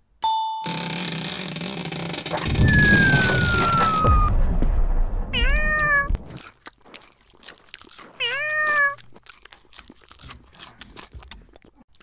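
A domestic cat meows twice, two short calls rising then holding, about three seconds apart, with light clicking between them as it eats crunchy dry cat treats. A few seconds of loud, noisy rustle come before the first meow.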